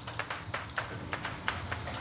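Chopped mushroom duxelles sizzling and crackling as it hits hot butter and oil in a copper saucepan, many fine irregular crackles over a steady low hum.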